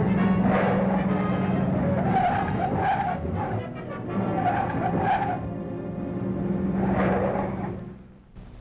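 A car driving fast with its tyres squealing in four bursts, over a sustained orchestral score.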